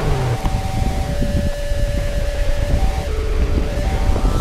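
Wind buffeting the mountain biker's camera microphone as the bike rolls down a dry dirt trail, with a steady low rumble from the tyres and frequent small knocks and rattles from the bike over bumps.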